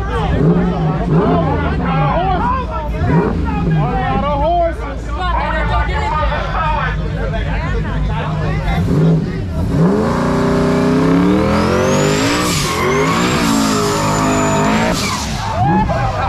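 Crowd chatter and shouting, then about ten seconds in a car engine revs up hard and its rear tyres squeal in a burnout, a high rising squeal that holds until shortly before the end.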